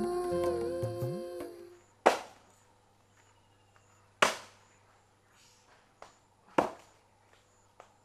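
Soft background music fades out over the first two seconds. Then come sharp chopping strikes of a hand tool, three loud ones about two seconds apart, with a few fainter knocks between them.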